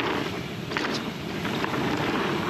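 Fezzari La Sal Peak mountain bike rolling fast down a packed dirt trail: steady tyre noise mixed with wind buffeting the camera microphone, and two brief rattles from the bike.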